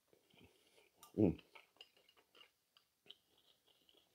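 A man's short "mm" of satisfaction while eating, about a second in, amid faint scattered small clicks of eating from a spoon and bowl.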